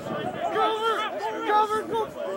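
Several voices shouting and calling over one another in short bursts, with no words clear.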